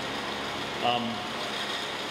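A man's brief "um" about a second in, over a steady hiss of background noise.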